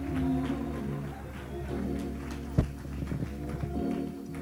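Church gospel band playing a slow instrumental introduction: sustained organ chords over low bass notes, with a single sharp click about two and a half seconds in.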